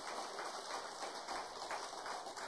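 Faint rustling and light ticks of Bible pages being handled at the pulpit, over a quiet room hiss.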